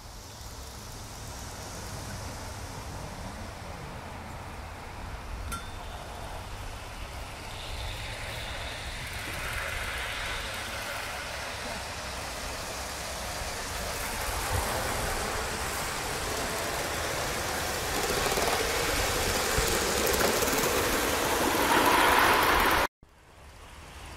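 Live steam model locomotive running on garden-railway track, its running sound growing steadily louder as it approaches, then cut off abruptly near the end.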